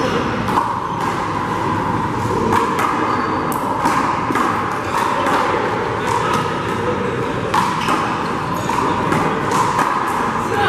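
A handball rally: a hollow rubber handball (a Big Blue) smacks sharply and repeatedly against gloved hands, the front wall and the floor, several times a second at its quickest. The hits echo in a large indoor court over a steady background of voices and hall noise.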